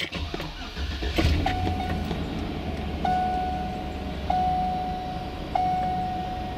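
2004 Chevrolet Avalanche's V8 engine cranking and catching about a second in, then idling steadily. A dashboard warning chime rings four times, about every 1.3 seconds, over the idle.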